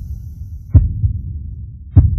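Intro sound design: a low throbbing rumble with deep heartbeat-like thumps, two strong ones about three-quarters of a second in and near the end.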